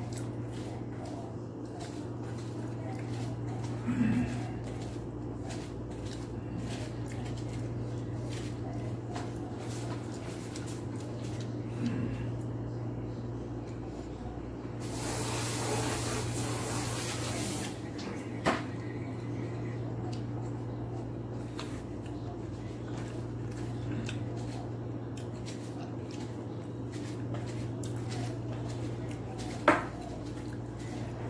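Hand-eating from a stainless steel bowl: small clicks of fingers and food against the metal and mouth sounds over a steady low hum. A few louder knocks stand out, and a hiss lasts about three seconds a little past the middle.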